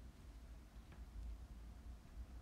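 Near silence: room tone with a steady low hum and one faint click about a second in.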